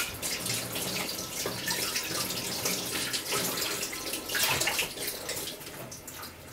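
Pot of tomato soup with cabbage, potatoes and onion simmering, the liquid bubbling with a steady stream of small pops and crackles that grow louder for a moment about four and a half seconds in.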